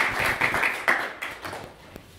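An audience applauding, dense clapping that thins out and fades over the last half-second.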